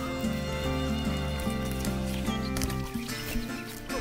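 Background music: an acoustic guitar song with long held notes. The bass notes drop away about three seconds in.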